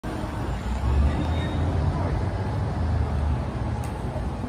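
City street traffic noise: a steady low rumble of passing vehicles, swelling twice.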